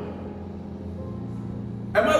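Soft background music in a pause of speech: low held notes that shift to a new pitch about a second in.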